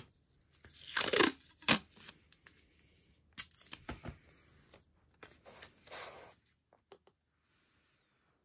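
Painter's tape being pulled and torn off the roll in several short rips, then pressed down by hand onto the cutting mat.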